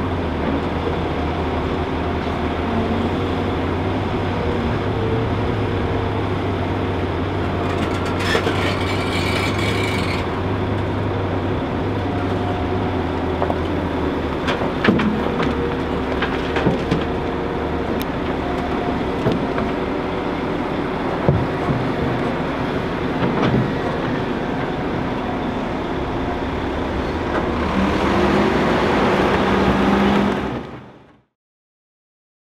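Diesel engines of a Liebherr R950 SME crawler excavator and a Volvo articulated dump truck running steadily as the excavator dumps soil and stones into the truck's body, with scattered knocks of stones landing in the bed. Near the end an engine note rises and grows louder.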